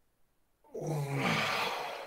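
A long, breathy voiced sound without words, starting less than a second in and fading near the end.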